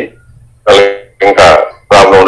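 A person's voice saying two or three drawn-out, sing-song syllables, with short pauses between them.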